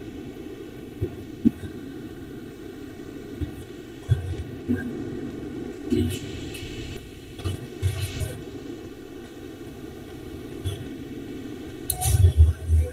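Steady low background noise from an open video-call microphone, with faint, indistinct voice-like sounds coming and going.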